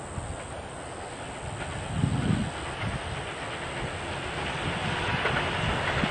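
Keihan 3000 series 'classic type' electric multiple unit running past, its wheel-on-rail noise growing louder as the train comes alongside, with a low thump about two seconds in.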